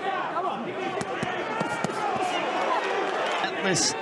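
Boxing arena crowd noise: many overlapping voices and shouts, with short sharp thuds of gloved punches landing now and then.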